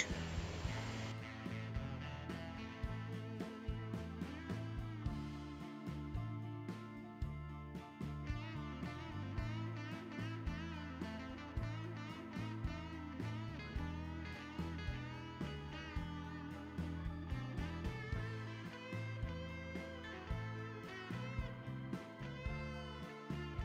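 Background music: a plucked-string instrumental with a steady beat.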